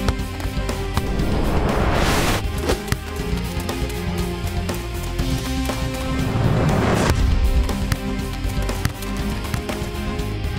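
Background music score with a steady beat. Two rising whooshes swell and cut off suddenly, one about two seconds in and one about seven seconds in.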